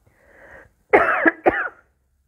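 A woman coughing twice in quick succession, after a short breath in.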